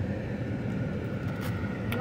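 Steady low rumble of a car's engine and tyres heard from inside the cabin while driving through a turn, with a couple of faint clicks near the end.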